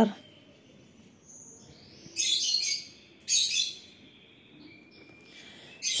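A pen writing the numeral 8 on a textbook page: two short scratching strokes, about two seconds in and just after three seconds.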